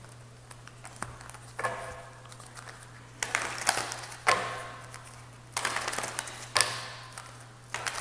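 A deck of oracle cards being shuffled by hand, in several short bursts of flapping, clicking card noise, over a steady low hum.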